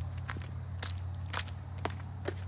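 Footsteps on a wood-chip mulch and leaf-litter path, several steps about half a second apart, over a steady high insect drone.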